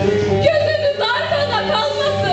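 A voice singing a slow melody with ornamented, wavering pitch over instrumental accompaniment.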